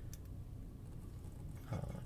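A few faint metallic ticks just after the start, from the small pins and pick of a lock cylinder being emptied over a brass pin tray, over a steady low hum.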